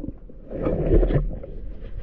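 Underwater, a diver's exhaled breath bubbling out in one gurgling burst starting about half a second in and lasting most of a second, over a steady low rumble of water.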